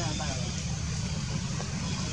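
Faint voices talking in the background over a steady low rumble; the voices fade out after the first half-second.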